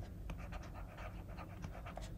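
Faint scratching and light ticks of a stylus writing on a drawing tablet, over a low steady hum.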